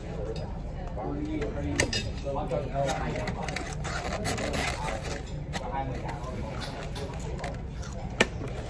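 Chewing on a crusty baguette sandwich, with a few sharp clicks and crunches, over faint voices and a steady low hum.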